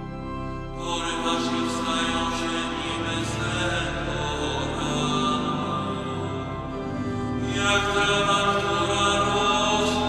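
Pipe organ of St. Joseph's Church in Kraków playing a slow psalm melody in long, sustained chords. The sound grows brighter and fuller about a second in and again near the end.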